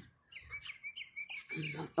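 A small songbird chirping a quick run of short, evenly spaced high notes, about five a second, for roughly a second and a half.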